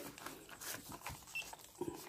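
Faint rustling of a clear plastic wrapper and a few light taps as hands grip and lift a coffee scale still sealed in its film.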